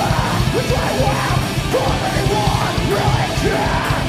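A rock band playing live: distorted electric guitar and a drum kit under shouted vocals. The shouting stops near the end while the guitar rings on.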